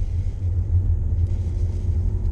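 Steady low rumble of a running car heard from inside its cabin.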